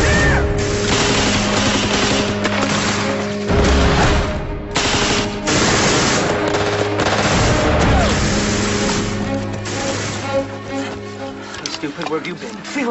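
A firefight of rapid, continuous gunfire, machine-gun bursts and rifle shots, over background music with steady held notes. The firing breaks off briefly about four and a half seconds in.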